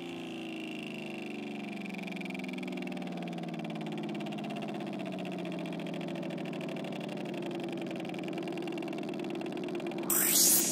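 Beatless breakdown of a house track: a sustained, wavering synth drone with no drums, slowly growing louder.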